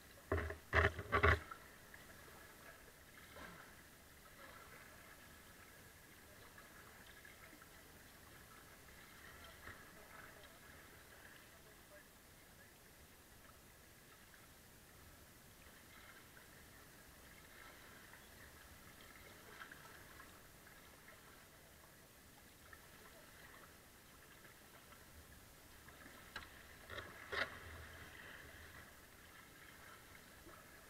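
Kayak paddling on a flowing river: faint steady water sound, with a quick cluster of sharp knocks about a second in and another near the end, from the paddle and boat.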